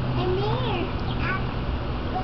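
A toddler's wordless, high-pitched vocal sounds, a few short rising-and-falling squeals or coos. A steady low hum runs underneath.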